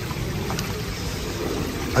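Steady low rush of running water from a garden koi pond's filter return and waterfall, with a faint tick about half a second in.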